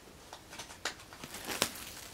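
Clear plastic shrink-wrap on an album being cut open and pulled off: a few short, sharp crinkles and crackles, the loudest about one and a half seconds in.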